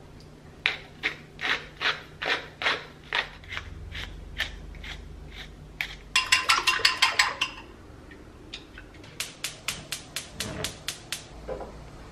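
Wooden pepper mill turned by hand over a bowl, grinding in runs of crisp clicks: a slower run of about ten strokes, a fast burst about halfway through, and another quick run near the end.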